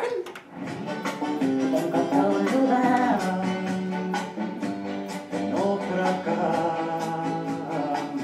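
A folk record playing from a turntable: Spanish-flavoured acoustic guitar music.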